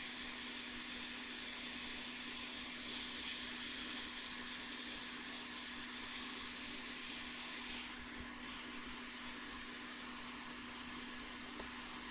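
Hot air rework station blowing a steady hiss of air from its nozzle onto a circuit board, set low at 100 °C with 120 litres a minute of airflow, with a faint steady hum underneath.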